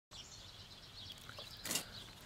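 Quiet outdoor garden ambience with faint high chirps, and a short scratchy noise about three quarters of the way through.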